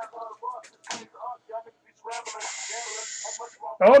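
Quiet, broken voice sounds. A steady hiss runs for about a second and a half from about two seconds in, and louder speech starts just before the end.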